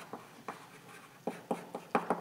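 Chalk writing on a blackboard: a run of short, sharp taps and scrapes as letters are stroked out, bunched more closely in the second half.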